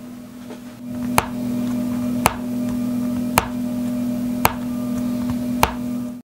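Closing soundtrack: a steady low drone that swells about a second in, with a sharp click about once a second, five in all.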